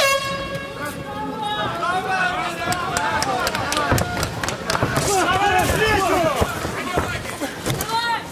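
A steady horn blast of about a second and a half signals the start of the round. Several people then shout over one another as the fighters engage.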